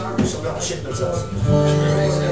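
Acoustic guitar being strummed, with a chord struck about one and a half seconds in and left ringing.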